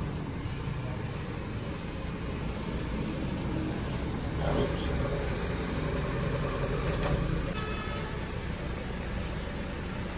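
A steady low motor rumble, with a couple of light knocks about four and a half and seven seconds in.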